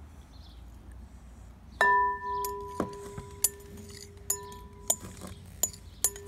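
A large glass mixing bowl struck sharply about two seconds in and ringing on with a clear, lasting tone. It is then tapped lightly about five more times, and each tap sets the ring going again.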